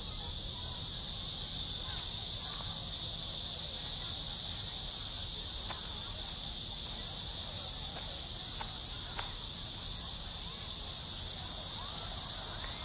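Steady high-pitched chorus of insects chirring without a break, over a low rumble, with faint distant voices.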